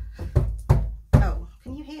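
A woman giving a vocal hyena impression: a run of about five short, sharp cackling whoops, each with a low thump at its start.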